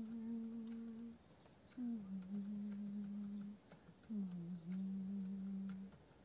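A person humming three long held notes at a low, steady pitch, each lasting one to two seconds. The second and third notes each open with a short slide down.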